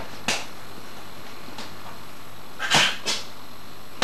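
Open-hand slaps on a bare torso during Sanchin testing (shime), the teacher striking the student's shoulders and chest to check his tension and stance. One sharp slap comes about a quarter second in, then a louder pair of slaps near the end.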